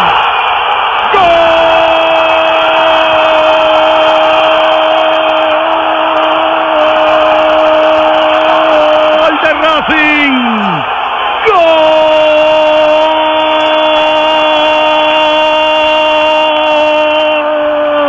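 Spanish-language radio football commentator's goal call: a long, loud, held "gooool" cry at one steady pitch lasting about eight seconds, dropping away about ten seconds in, then after a breath a second held cry of about six seconds, over steady background noise.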